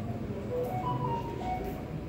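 A steady low rumble, consistent with a locomotive driving simulator's engine sound. Near the middle it is joined by a short run of brief high notes that step up and then back down.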